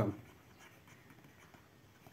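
Faint scratching and light ticks of a stylus writing a word by hand.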